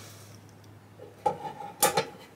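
A steel rule being handled against a wooden neck blank: light rubbing, then a few short metallic clicks and clinks in the second half, with a brief ringing tone.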